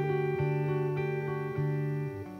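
Gibson archtop electric guitar played clean, single picked notes and chord tones ringing into one another, with a new note about every half second.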